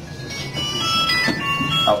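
A short electronic chime melody: a run of high, clear, bell-like notes stepping from pitch to pitch, with a man's voice coming back in near the end.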